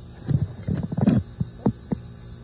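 Dull knocks and thumps of things being handled: a quick cluster in the first second, then a few single knocks.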